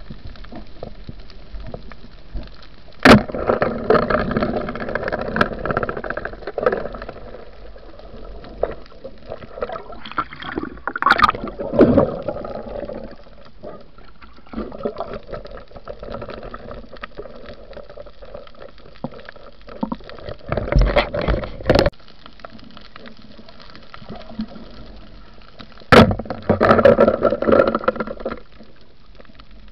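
Underwater sound recorded by a diver's camera: bursts of bubbling and gurgling water over a steady wash, with a sharp knock about three seconds in and another near the end.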